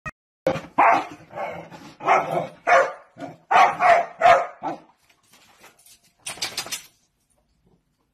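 A dog barking repeatedly in quick, loud calls, followed near the end by a brief burst of quick scratchy clicks.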